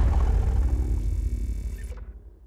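The tail of an animated-logo sound effect: a deep low rumble that slowly dies away, fading out near the end.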